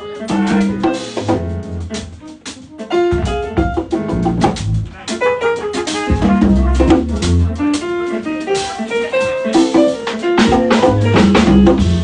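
Live small jazz band playing: drum kit and congas keep the groove under guitar and keyboard lines, getting louder and fuller about three seconds in.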